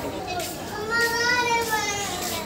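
A child's high-pitched voice calling out once, one drawn-out call about a second in, with fainter voices before it.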